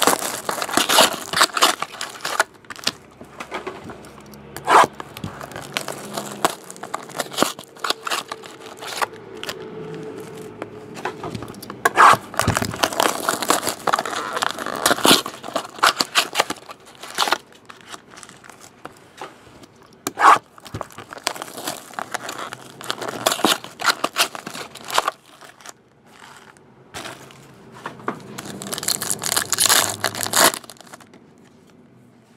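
Foil trading-card pack wrapper being torn open and crinkled by hand, in irregular crackling bursts that come thickest about twelve to sixteen seconds in and again near the end.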